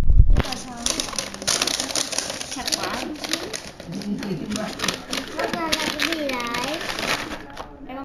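Brown paper bag crinkling and rustling as it is handled and opened, a dense crackle of sharp paper clicks that starts abruptly just after the beginning and stops shortly before the end.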